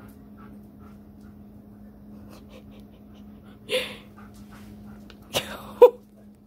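A dog panting quietly while waiting for a treat, with a breathy huff near the middle, a sharp tap, and a short whine just before the end.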